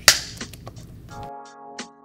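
A film clapperboard snapping shut once, sharp and loud, right at the start. About a second later background music comes in: a held chord with a light, steady tick about three times a second.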